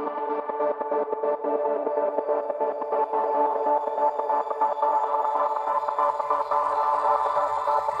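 Psytrance remix intro: steady sustained synthesizer tones with a quick fluttering pulse. The high end fills in about three seconds in, and a deep bass comes in near the end.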